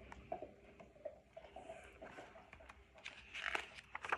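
Pages of a picture book being handled and turned: faint paper rustles and small clicks, with a louder rustle of the page turning about three seconds in.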